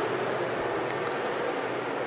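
Steady fan noise from an electric space heater running on high, together with an inverter and an induction cooktop, all drawing about 300 amps from a 12 V battery.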